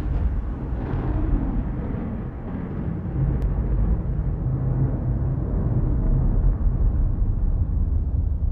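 A deep, steady low rumble, a sound-effect drone with a thin hiss on top that fades away over the first few seconds.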